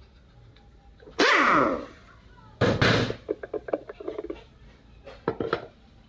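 Parts of a stripped-down automatic transmission being handled on a workbench: a loud harsh burst a little over a second in, then a knock and a run of short, light clicks and knocks.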